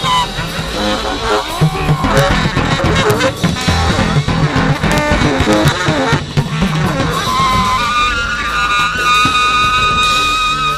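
Free jazz improvisation of tenor saxophone, bass and drums: busy, wavering horn lines over loose, dense drum strikes and bass. The horn settles into a long held note for the last couple of seconds.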